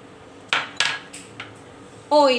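Small ceramic bowls knocking and clinking against each other and the countertop as they are handled, about four short sharp clinks in quick succession.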